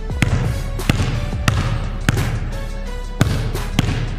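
A basketball dribbled on a hardwood gym floor: about six bounces, roughly every half second to a second. Background music with a steady bass runs under them.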